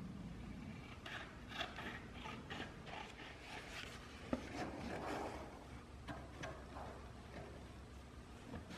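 Cardboard template being cut and handled: faint rustling and scraping in a run of short strokes, with one sharp click about four seconds in.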